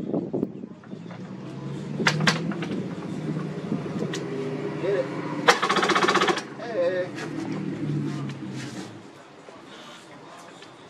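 Yamaha jet ski two-stroke engine being cranked over through a borrowed start/stop switch, which is being tried because the original switch is suspected bad. There is a louder, fast rapid-fire rattle for about a second midway, and the sound dies away about nine seconds in.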